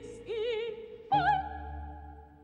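A soprano sings a short operatic phrase with wide vibrato over the orchestra. About a second in, a loud orchestral chord comes in with a held note, then slowly fades.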